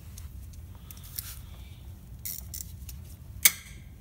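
Spanner straining on a seized bolt on the EGR of a Toyota 1KZ-TE diesel: a few faint metallic clicks, then one sharp crack near the end, which fits the seized bolt breaking loose.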